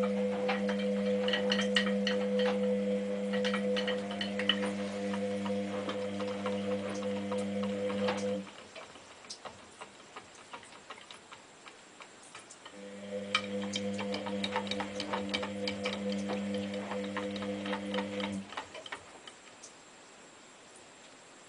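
A cat licking the inside of a front-loading washing machine's drum: rapid, irregular wet clicks of tongue on the drum. A steady hum runs with it, breaking off about 8 seconds in and returning for a few seconds near 13 to 18 seconds.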